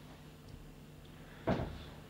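Quiet room tone with one short knock about one and a half seconds in.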